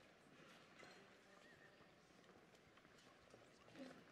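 Near silence: faint room tone of a large church, with scattered soft footsteps and shuffling as people move to and from the altar rail.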